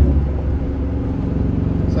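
Pickup truck on the move, heard from inside the cab: a steady low drone of engine and road noise.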